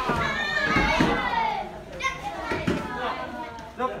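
Shouts and voices of karate students sparring, loudest in the first second, with a few sharp thuds of kicks and punches landing scattered through it and a short cry near the end.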